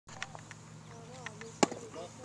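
A pitched baseball striking: one sharp crack about one and a half seconds in, over faint voices.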